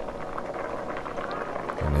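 Pot of water with potato chunks at a rolling boil, bubbling steadily.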